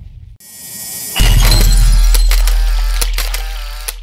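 Sound effects of a channel logo intro: a rising swell, then a heavy bass hit about a second in that rings on and slowly fades, with several sharp clicks as an animated subscribe button is pressed.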